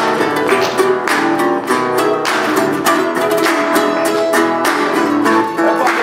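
A metal-bodied resonator guitar and a mandolin playing a blues instrumental intro together in a steady picked and strummed rhythm.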